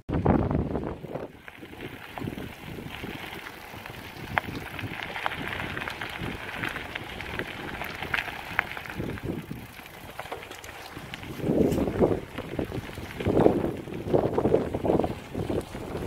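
Mountain bike riding along a gravel forest track: tyre noise on the gravel, with occasional clicks and rattles from the bike, and wind buffeting the microphone, in stronger gusts near the end.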